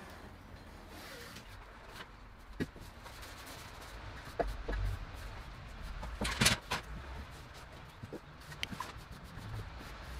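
Faint scraping and tapping of a steel plastering trowel working wet skim plaster on a wall, over a low background hum, with one louder scrape about six and a half seconds in.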